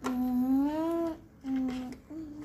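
A person humming two held notes: the first rises a little in pitch before breaking off about a second in, and after a short pause a shorter second note returns to the starting pitch.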